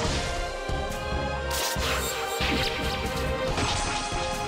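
Instrumental theme music with held tones and a steady beat, overlaid with several sudden crash and whoosh sound effects.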